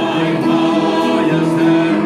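A small group of men and women singing together from song sheets, accompanied by an upright piano, the voices holding long notes.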